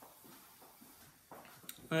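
Quiet room tone with a few faint handling knocks and a sharp click about a second and a half in, as a glass salt grinder is brought back to the table.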